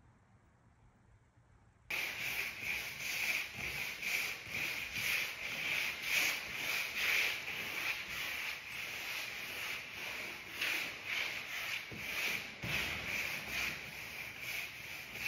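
A paintbrush stroked back and forth over moulding strips laid on the floor: a steady run of scratchy brush strokes, about two a second. It starts suddenly about two seconds in, after faint room tone.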